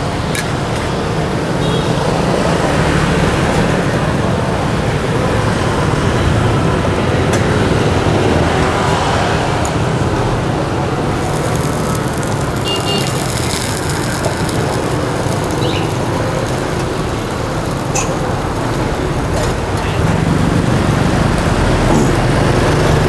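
Oil sizzling in a wok as a bánh xèo crepe fries over a gas burner flame, a steady hiss mixed with street traffic and voices, with a few light clinks of utensils.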